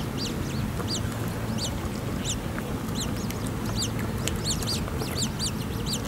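Eurasian coot chicks giving thin, high begging peeps, each a short up-and-down note, repeated about two to three times a second over a steady low background noise.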